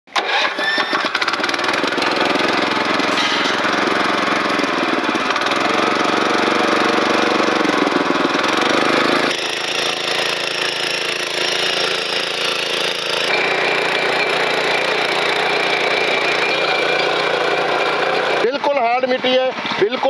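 Small petrol engine of a walk-behind power weeder running steadily under load as it drags a ridger through dry soil. The sound shifts abruptly twice, about nine and thirteen seconds in, and a man's voice comes in near the end.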